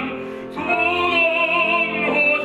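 Operatic female voice singing with vibrato: a held note fades about a third of a second in, then a new long note is sustained.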